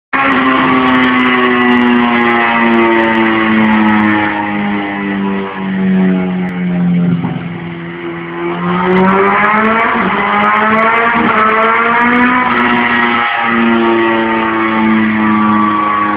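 Suzuki B-King's inline-four engine with a Yoshimura slip-on exhaust running at high revs on a chassis dynamometer. The revs sag for a couple of seconds around the middle, then climb back and hold high.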